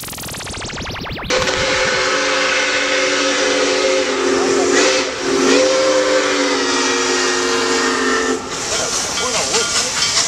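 Steam engine's multi-chime whistle blowing one long blast of about seven seconds, several tones sounding together over a hiss of steam, the pitch sagging briefly midway. Before it, about a second of rapid clicking.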